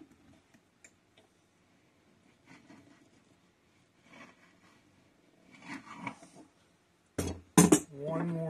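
Tapered reamer in a hand brace being turned in a leg hole in a wooden chair seat, faint wood-scraping cutting sounds in short irregular bursts as the hole is enlarged. Near the end, two loud sharp knocks.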